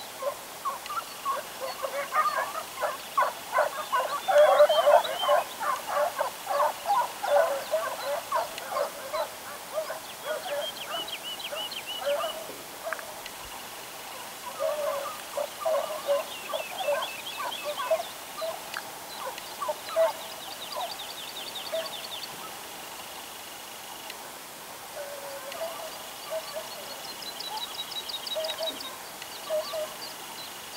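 A pack of hunting hounds baying on a hare's scent trail, many voices calling fast and overlapping, busiest in the first several seconds and more scattered after. Short songbird trills sound above them now and then.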